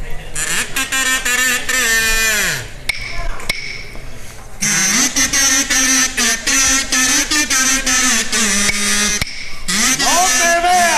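Carnival kazoos (pitos) played through the microphones by the cuarteto, buzzy and pitched: a first phrase that ends in a falling glide about two and a half seconds in, a short lull, then a longer held passage from about five seconds to nine.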